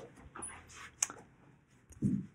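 Handling noise from a handheld camera being carried and set back in place: soft rustles and puffs, with one sharp click about a second in.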